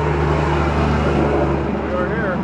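A motor vehicle's engine running steadily close by, a low even hum over street traffic.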